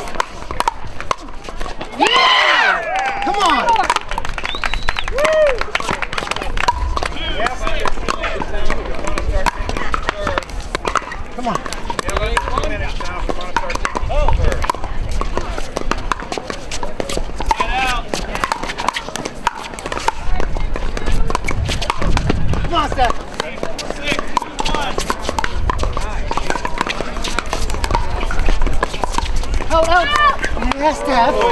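Pickleball paddles striking a hard plastic ball, sharp pops repeating irregularly from this and neighbouring courts, mixed with players' voices calling out.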